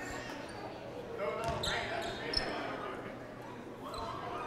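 Echoing gymnasium sound of a basketball game in play: a basketball bouncing on the hardwood court and indistinct voices of players and spectators, with a couple of sharp knocks in the middle.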